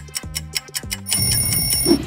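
Quiz countdown timer sound effect: ticking about four times a second over a looping bass line. About a second in, an alarm-clock bell rings steadily, signalling that the time is up.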